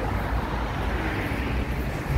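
Steady low rumble of outdoor city background noise, with no distinct events.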